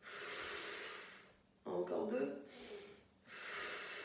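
A woman's forceful breaths out through the mouth, two long hissing exhales about three seconds apart, breathing out on the effort of a Pilates exercise. A short voiced sound falls between them.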